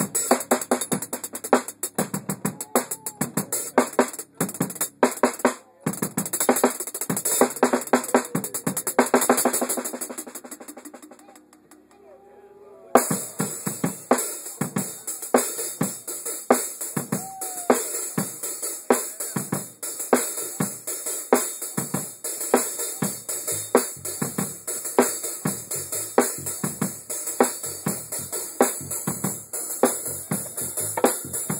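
Live drum-kit solo: fast snare and drum strikes building into a dense roll about eight to ten seconds in, then fading to a brief lull. The kit comes back in suddenly with a steady beat under constantly ringing cymbals.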